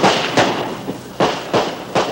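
A rapid, irregular string of about five gunshots in two seconds, each a sharp crack with a short echo, recorded on an old TV news camera's soundtrack.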